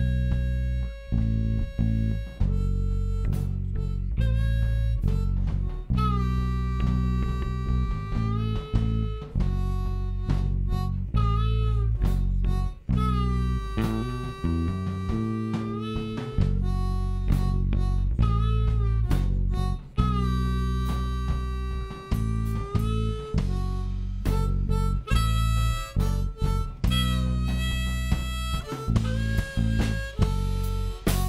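Live rock band led by a harmonica played into the vocal mic, long held notes with bends, over electric guitar, bass guitar and drums.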